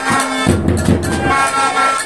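Plastic fan horns blown in long, steady blasts in a football crowd, with drumming underneath.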